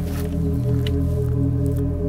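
Ambient background music: a sustained low drone of steady held tones.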